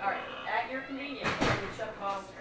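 Pet pig squealing and grunting into an anesthesia mask while it is held during mask induction of anesthesia, with a short loud noisy burst about one and a half seconds in.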